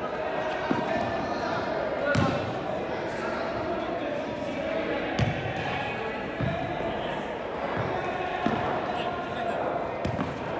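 Football kicked and bouncing on artificial turf in a large echoing sports hall: about five sharp thuds a second or more apart, the loudest about two seconds in, over players' shouts and calls.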